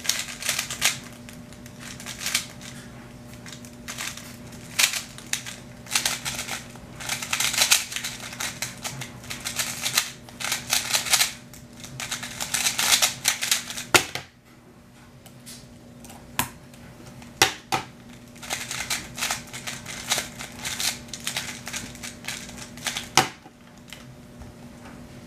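A plastic speedcube being turned fast by hand: rapid bursts of clicking layer turns, pausing about halfway through where only a few single taps are heard, then clicking again.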